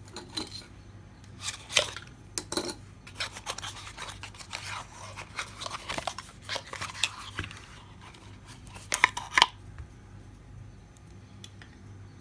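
Cardboard nail polish box being handled and opened, with scraping and rustling. The loudest moment is a quick cluster of sharp clicks just after nine seconds in.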